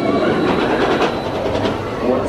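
Ice Breaker, a Premier Rides launch roller coaster: a train rushes past close by, its wheels rattling along the track in a quick run of clacks as the cars go by.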